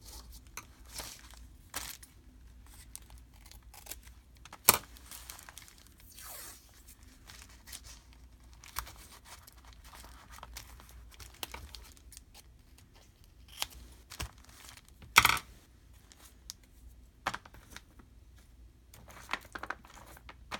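Washi tape and paper being handled: a strip of tape pulled, cut with small scissors and pressed down onto a journal page. Quiet scattered clicks and rustles, with two louder sharp sounds about five and fifteen seconds in.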